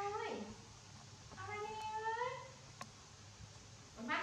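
Baby macaque giving long, high-pitched coo calls: one tails off with a falling slide just after the start, and a second comes about a second and a half in, rising slightly at its end.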